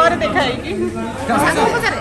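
Speech only: people talking.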